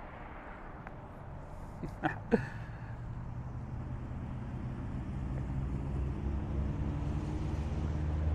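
Low, steady hum of an idling vehicle engine, growing gradually louder, with a couple of short sharper sounds about two seconds in.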